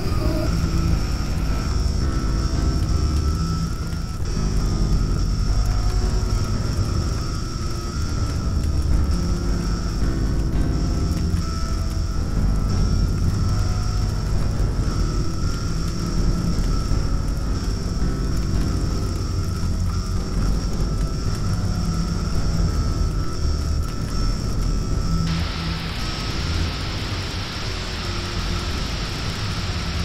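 Experimental noise music: a dense, heavy low rumble under steady high-pitched drones, with a layer of hiss coming in about 25 seconds in.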